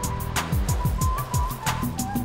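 Electronic segment-intro jingle music with a fast, steady ticking beat and quick falling bass notes under a held synth tone.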